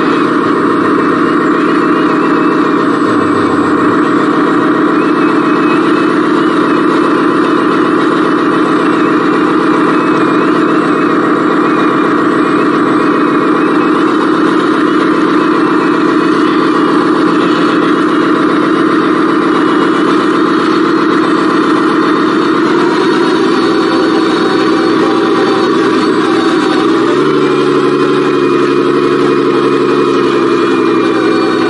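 Radio-controlled Eagle Mach A40G articulated dump truck (a scale Volvo A40G) driving, heard up close from a camera mounted on the truck. It makes a steady engine-like running drone whose pitch shifts a few seconds before the end and again near the end.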